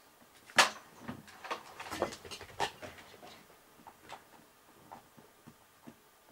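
A string of light knocks and clicks from someone moving about close to the microphone, the sharpest about half a second in, then thinning out into fainter, sparser ticks.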